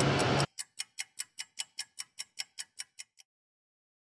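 The tail of a group of men shouting cuts off about half a second in. It is followed by a clock-like ticking sound effect, about five even ticks a second, which stops a little over three seconds in.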